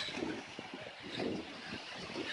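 Wind rushing over the microphone with the sea's surf behind it, a steady noisy hiss at a fairly low level.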